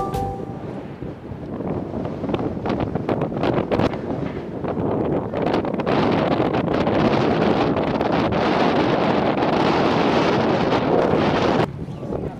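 Wind buffeting the camera microphone on an open hilltop, a rough rushing noise with scattered crackles. It grows stronger about halfway through and cuts off abruptly near the end.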